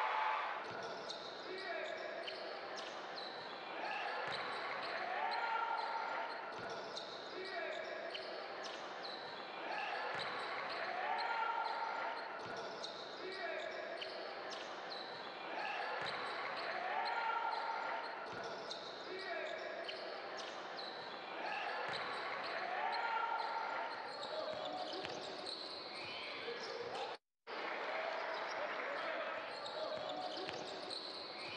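Basketball game sound, a ball bouncing on the court, with a pattern of rising tones that repeats about every six seconds. The sound cuts out briefly twice near the end.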